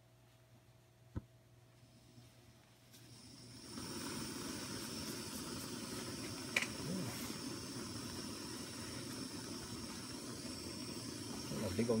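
Lightweight titanium canister gas camping stove being lit with a match: after a near-quiet start broken by a single click, the burner's hiss of burning gas comes up over about a second and then runs steady.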